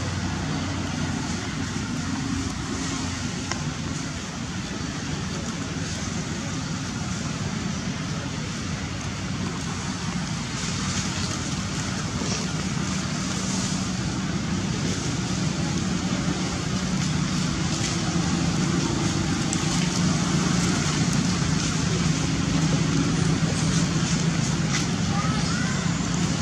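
Steady outdoor background noise: a hum like distant road traffic with faint voices under it, growing slightly louder toward the end.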